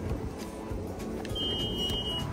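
Quiet background music, with a single high, steady electronic beep lasting about a second that starts past the halfway point.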